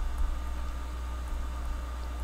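Steady low hum with a faint even hiss of background noise; no speech.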